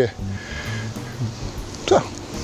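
Soft lounge background music runs steadily under the scene, with a short spoken sound near the end.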